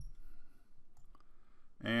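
A few faint clicks from a computer mouse as column widths are dragged in a spreadsheet, then a man's voice starts just before the end.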